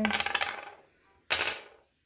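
Small hard end caps of the table's poles clinking against a laminated wood-grain board: a short ringing clatter at the start, then a single sharp clack about a second and a half in.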